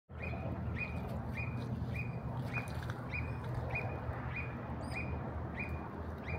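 A bird calling one short, high note over and over at an even pace, a little under two a second, over a low steady rumble.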